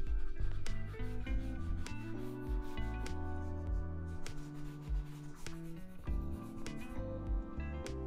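Quick strokes of a wooden-backed shoe brush rubbing over a black leather dress shoe, brushing in the polish. Background music with steady stepped tones plays underneath.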